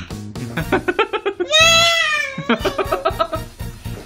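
A young girl crying, with one long wavering wail near the middle, over background music.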